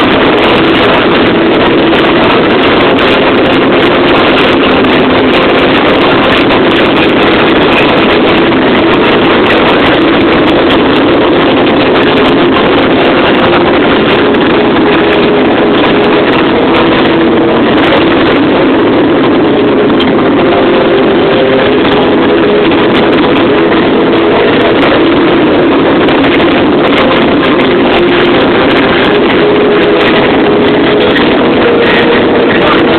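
A fireworks display going off continuously, its bangs and crackle merged into one loud, unbroken rushing noise.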